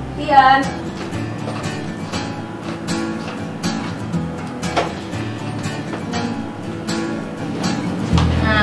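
Background music with a strummed acoustic guitar, its strokes evenly paced. A woman's voice calls out briefly about half a second in.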